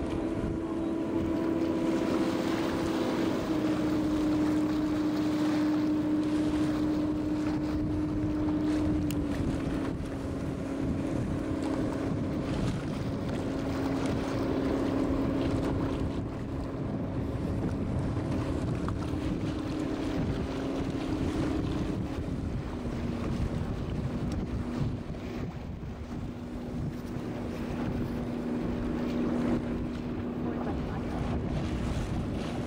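Tour boat under way: its engine runs with a steady hum that drops in pitch in steps, a few seconds in, about nine seconds in and again past twenty seconds, over wind buffeting the microphone and water rushing along the hull.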